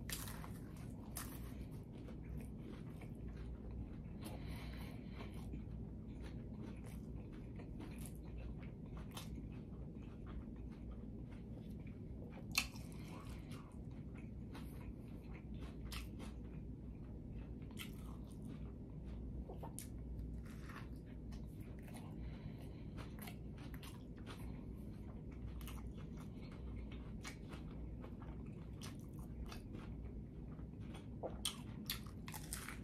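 Close-up eating: bites and chewing through a crispy fried tortilla shell of a smash burger taco, with many small irregular crunches and one sharper crunch near the middle. A low steady hum runs underneath.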